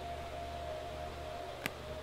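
A steady, faint single-pitched tone with a low hum beneath it, and one faint click about a second and a half in.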